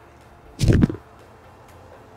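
A single quick whoosh sound effect about half a second in, marking an edited instant outfit change, over a faint steady background hiss.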